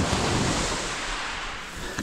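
Waves washing on a shingle beach: a broad rush of surf that gradually fades.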